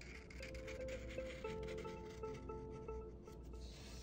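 Faint background music of a few held notes, starting about half a second in, with a felt-tip marker rubbing across corrugated cardboard as a curved line is drawn.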